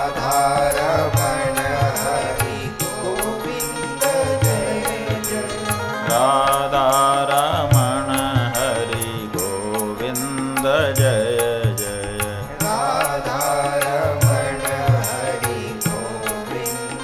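Hindu devotional bhajan music: a wavering melody over low drum strokes and a steady high ticking beat about three times a second.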